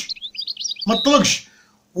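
European goldfinch singing: a quick run of short, high twittering chirps through the first second or so.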